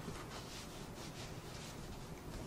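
Faint, soft rustling and brushing as a foam mattress is pushed and straightened on its bed frame, hands sliding over the fabric cover, in several short strokes.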